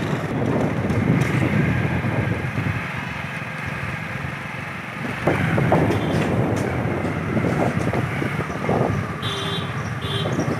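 Street ambience with a steady low rumble of motor traffic, which swells a little from about five seconds in. A short high-pitched tone sounds just before the end.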